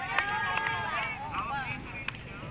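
People talking in the background, fainter than the announcer's voice just before, with a few light clicks.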